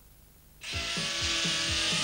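Cartoon sound effect of a character spinning at high speed and grinding against metal cage bars: a loud, saw-like buzzing whir that starts suddenly about half a second in, with low swooping sweeps repeating underneath.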